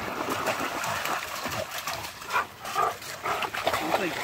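Two dogs playing in shallow water: splashing and sloshing through the water, with two short dog whines about two and a half seconds in.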